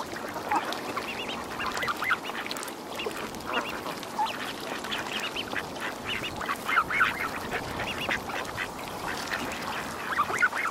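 A flock of waterfowl calling: a dense chorus of many short, overlapping honking and quacking calls.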